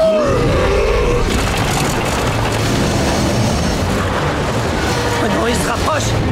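Cartoon action soundtrack: a character's wavering, falling yell in the first second, then a steady loud rumble of action sound effects under music.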